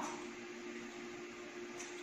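Quiet room tone with a faint steady hum.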